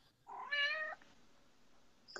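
A domestic cat meowing once: a single short call, under a second long, that rises in pitch at its start and then levels off.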